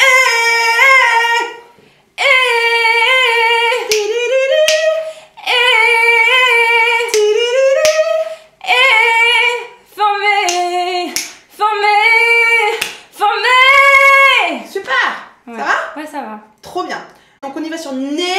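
A woman singing a melody on a single 'e' vowel: about seven held phrases with short breaths between them, the pitch bending and gliding within each, then a few shorter sounds near the end. It is a vocal exercise for singing the high passage with a fuller, more powerful tone.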